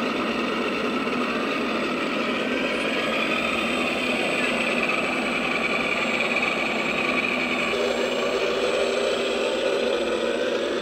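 Electric motors and propellers of a radio-controlled four-engine B-17 model running as it taxis, a steady whirr with small rises and falls in pitch as the throttle moves.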